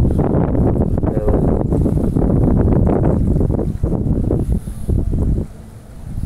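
Heavy wind buffeting the microphone, with a shovel digging into sandy soil, scraping and thudding with each stroke. The rumble drops away near the end.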